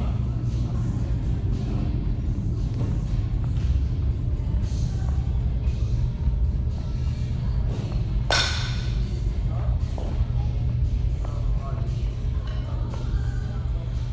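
Steady low hum of a large indoor hall, with background music and faint voices. One loud, sharp crack about eight seconds in.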